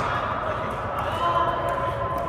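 A few light knocks of a pickleball in play, over background voices.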